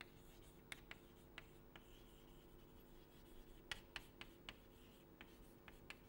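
Chalk writing on a blackboard, faint: a series of light, irregular taps with a short scratch as letters are formed.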